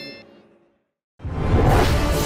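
A fading tail of music dies away, then after a brief silence a loud whoosh sound effect starts sharply about a second in, opening a logo intro and running into theme music.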